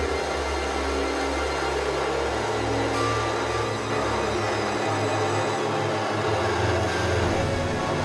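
Experimental electronic synthesizer music: a dense, noisy drone over sustained low bass tones that shift in pitch a couple of times.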